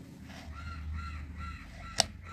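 A bird calling in the background: a quick series of short, arched calls, about three a second, starting about half a second in. A single sharp click near the end.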